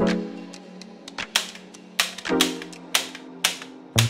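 Background music with sustained notes, over which a hand staple gun fires about five times, sharp clicks at uneven spacing, fastening chicken wire to a wooden frame.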